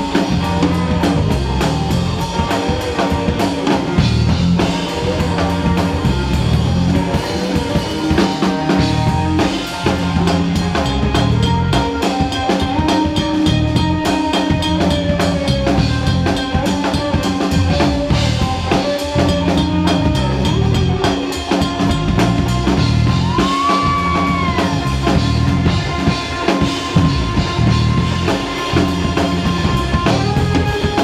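Live rock band playing an instrumental passage, loud: a Stratocaster-style electric guitar plays sustained lead notes over drum kit and bass. Late on, a high guitar note is bent up and let back down.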